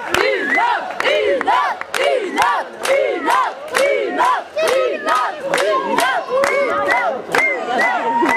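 Concert crowd shouting and cheering in rhythm, many voices rising and falling together in short repeated shouts, with sharp claps about twice a second.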